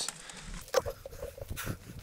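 Footsteps crunching on a dry dirt trail, with twigs and leaves brushing past, as a series of irregular short crackles; the sharpest comes about three-quarters of a second in.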